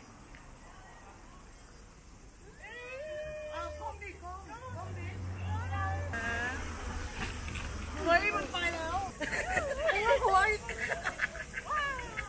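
High-pitched voices squealing and exclaiming in short, rising and falling cries, sparse at first and then coming thick and loud from about eight seconds in.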